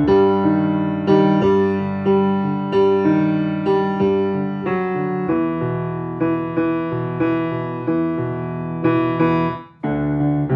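Piano playing the bass part of a choral piece with chords, notes struck about twice a second. The playing breaks off briefly near the end and then resumes.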